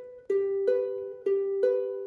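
Ukulele picking single notes one at a time, alternating between B and G in the picking pattern that goes with a G7 chord; each note rings and fades before the next pluck, about four plucks with a slightly long-short rhythm.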